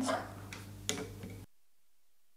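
Quiet room tone with a steady low hum and a single faint click about a second in. The sound then drops to dead silence partway through.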